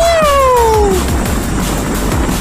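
A man's loud, high-pitched yell that rises and then falls away over about a second, over electronic dance music with a steady beat.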